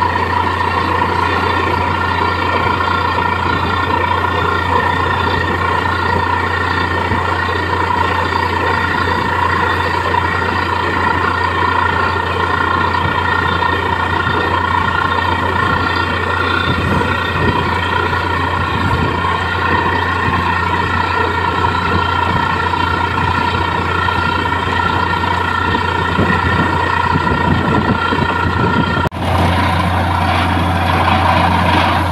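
Truck-mounted borewell drilling rig running steadily: a constant low engine drone with steady high tones from the air compressor and drilling gear over a rushing noise. The sound dips for an instant near the end.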